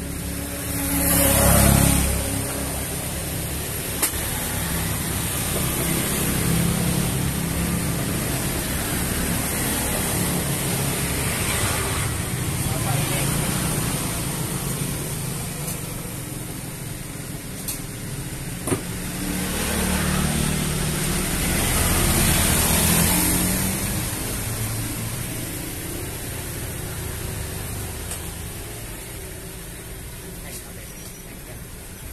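Road traffic passing close by, with a steady traffic noise that swells as vehicles go past, loudest about two seconds in and again around twenty to twenty-three seconds in. A few sharp clicks cut through, one about four seconds in and two close together near eighteen seconds.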